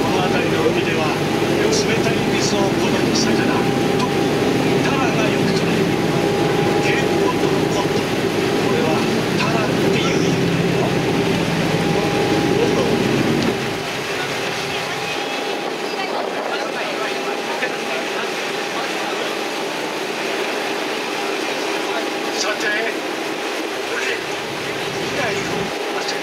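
Tour boat's engine running steadily with a low rumble and a steady hum. About halfway through, the rumble drops away and the hum carries on more quietly.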